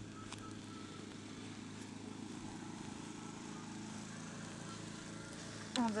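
A steady low machine hum, like an engine running, holds at an even level throughout. A woman's voice begins just before the end.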